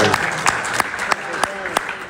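A small group of men clapping in scattered, uneven claps, with short shouted calls of approval among them, in applause for a poem that has just been recited.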